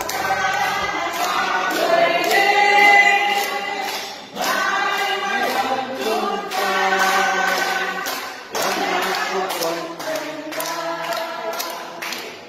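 A group of voices singing a song together, with steady hand-clapping in time to it.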